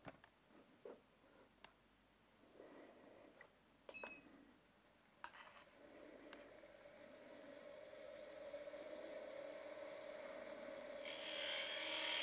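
A few faint clicks, then a woodturning lathe running, its motor a steady hum that grows louder over several seconds. Near the end a turning tool starts cutting the spinning wood with a hiss.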